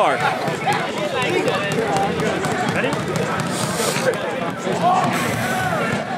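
A crowd of spectators talking over one another, many voices at once, with a few louder calls near the end.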